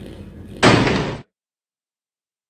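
A stamp-slam sound effect, one sudden, loud, noisy hit a little over half a second in that lasts about half a second and then cuts off into dead silence.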